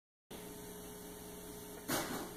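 Faint, steady electrical mains hum with a light hiss, cut by one short noise near the end.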